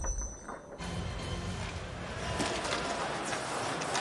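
Short broadcast transition music for a period-break graphic, followed by a steady wash of arena crowd noise.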